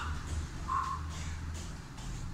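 A person doing burpees on foam floor mats: soft movement and landing sounds over a steady low hum, with one short high-pitched sound just before the middle.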